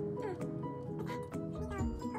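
Background music: a busy melody of short, evenly pitched notes with clicky attacks. A couple of short falling pitch glides come in the first second, and a low bass pulse joins near the end.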